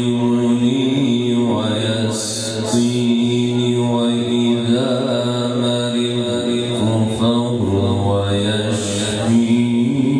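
A man reciting the Quran (tilawat) in a melodic, drawn-out style into a microphone, holding long, wavering ornamented notes.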